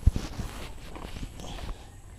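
Footsteps in sandals on a grassy bank: a few soft, irregular thumps, the loudest just after the start, with some rubbing and handling noise close to the camera.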